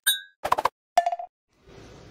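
Short electronic app-logo sound effect: three quick plops and chimes in the first second or so, the last a brief single tone, then a faint hiss.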